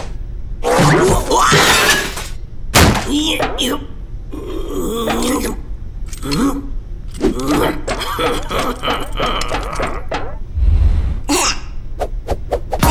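A cartoon character's wordless voice: grunts, mumbles and exclamations with no real words. Several clattering knocks from pots and kitchen utensils come in between, the clearest about three seconds in.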